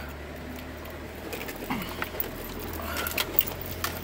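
Jeep Wrangler engine running with a steady low hum as it crawls along the trail, with scattered light clicks and rattles from the vehicle.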